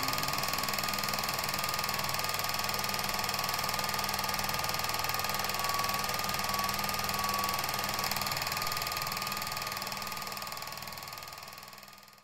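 Film projector running: a steady, very fast mechanical clatter that fades out over the last couple of seconds.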